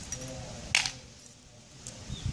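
Pieces of broken glass bangle clinking on a tiled floor as they are picked up: one sharp clink a little under a second in, with a few faint ticks around it.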